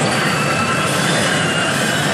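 CR Ikkitousen SS2 pachinko machine playing a loud, sustained rushing sound effect with a few thin steady high tones over it during its animated reach sequence.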